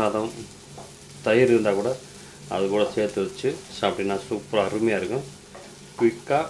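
Chopped flat beans sizzling as they stir-fry in a nonstick kadai, with a wooden spatula scraping and turning them in about four strokes, each louder than the steady sizzle between them.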